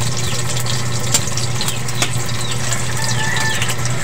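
Hot dogs frying in hot oil in a metal wok: a steady sizzle full of small crackles and pops, over a low steady hum.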